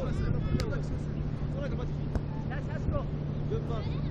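Faint, scattered voices of people talking and calling out over a steady low rumble, with a few sharp knocks or slaps, the clearest about half a second in.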